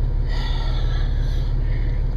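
Off-road 4x4's engine idling: a steady, heavy low rumble.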